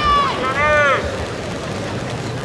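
A high-pitched voice speaks or calls out briefly in the first second. Then there is a steady murmur of background crowd and arena noise.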